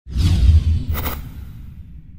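Cinematic whoosh sound effect: a deep rumble starts suddenly under a sweeping hiss, with a short bright swish about a second in, then fades away.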